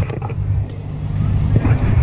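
Steady low engine rumble of a vehicle idling nearby, heard under short fragments of speech.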